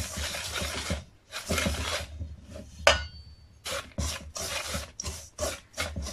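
Wire whisk scraping through a crumbly mix of muscovado sugar, flour and oil in a stainless steel bowl, in repeated rasping strokes: longer strokes at first, then quicker short ones. A sharp click with a brief ring comes about three seconds in.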